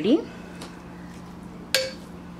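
A spatula knocks once against the side of a pressure cooker pot while the cooked rice is stirred: a single short, sharp clink near the end, over a faint steady low hum.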